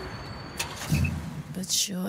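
A break in a pop song, the music dropped out: a short, sharp noise about half a second in, then low rumbles and brief voice sounds, with hissy bursts near the end.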